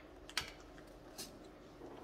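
Pokémon trading cards handled in the hands as one card is moved behind the others: a sharp light tap of card on card about a third of a second in, and a fainter flick a little after a second in.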